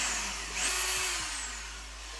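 Corded electric drill with a quarter-inch bit boring a hole, starting abruptly. Its whine falls in pitch and fades as the drill winds down.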